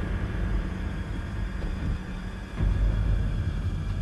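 Low, ominous rumbling drone of suspense music, swelling louder about two and a half seconds in.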